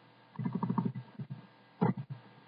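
A man's low, mumbled voice for about a second, then a short louder vocal sound near the end.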